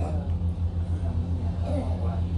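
A steady low hum with a fast flutter runs throughout, under faint voices.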